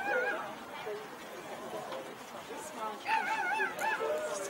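A dog whining in high, wavering whines: one trails off just after the start and another comes near the end, with people chatting in the background.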